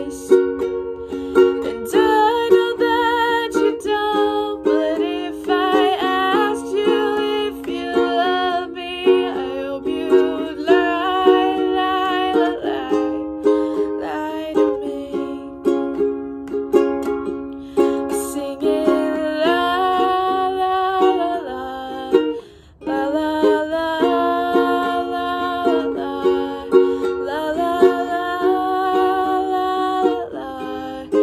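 A woman singing while strumming a ukulele, her held notes wavering. The playing and singing break off briefly about three-quarters of the way through, then pick up again.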